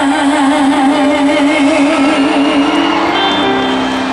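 Live pop-rock band music: a female singer holds a long sung note with vibrato that ends about two seconds in, while the band sustains a steady closing chord.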